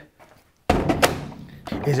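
A lithium-ion battery pack pushed into the battery compartment of a Milwaukee M18 FUEL 9-inch cordless cut-off saw: a sudden thunk with a sharp click as it seats, then a man's voice near the end.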